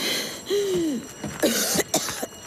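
A person coughing repeatedly after inhaling a lot of smoke. There is a burst at the start, a strained voiced cough about half a second in, and a louder cluster of coughs near the end.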